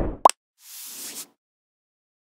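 Logo-animation sound effects: the end of a low whoosh, a short sharp pop about a quarter second in, then a soft hissing swoosh that stops about a second and a half in.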